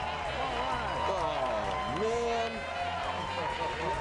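Studio audience cheering, many voices overlapping, over music playing.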